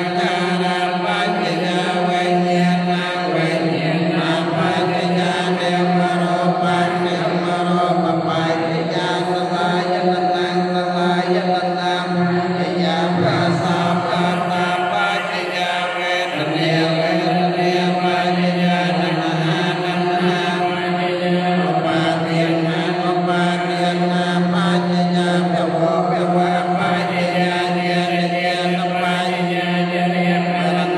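Theravada Buddhist monks chanting the evening homage, led into a microphone: a steady, droning recitation held on one low pitch, with a short shift in the line around the middle.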